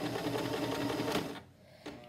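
Electric home sewing machine running in reverse, backstitching the start of a seam so it won't unravel: a fast, steady run of needle strokes over a motor hum, stopping about one and a half seconds in.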